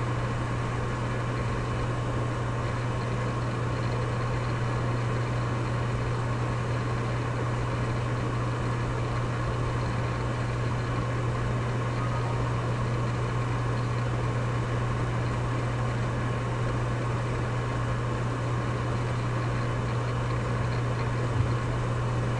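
Steady low hum with a constant hiss behind it, unchanging throughout: background noise of the recording room and microphone.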